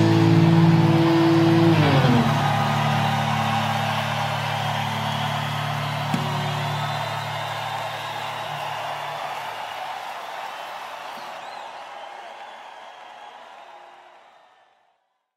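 Rock band's final chord held on guitars and bass, sliding down in pitch about two seconds in, then ringing out and fading away. A steady wash of noise underneath fades out slowly with it.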